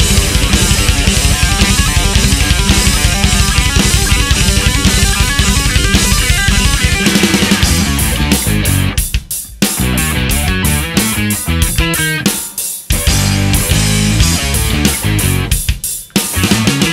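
Progressive jazz-metal played by electric guitar, bass guitar and drum kit: a dense, fast driving passage that turns into stop-start accented hits, with the band cutting out briefly twice in the second half.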